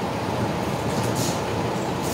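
A steady low mechanical rumble, with two short swishing scrapes about a second apart as black plastic borewell riser pipe is hauled up by hand.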